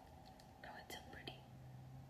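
Near silence, broken about a second in by a brief faint whispered sound from a woman. A faint low steady hum starts just after it.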